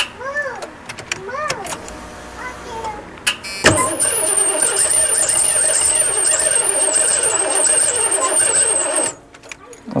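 Starter cranking a 1991 Ford E-150 van's engine for about five seconds, starting suddenly and stopping abruptly, with a high whine over it. The fuel line is disconnected at the engine for a fuel-delivery check, so the engine turns over without starting.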